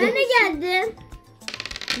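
A voice calls out briefly, then about a second and a half in comes a short rattle of small plastic dice shaken in a hand for a ludo roll, over background music with a steady beat.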